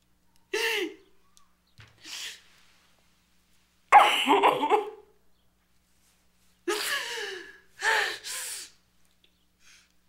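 A woman sobbing: a series of short crying wails that fall in pitch, broken by gasping breaths, the loudest cry about four seconds in.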